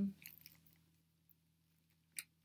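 The end of a spoken 'um', then a few faint small clicks of metal earrings being handled in the fingers, then near silence.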